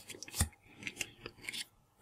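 Paper stickers in a stack sliding and flicking against one another as they are thumbed through by hand: a few short scrapes and clicks, the loudest about half a second in.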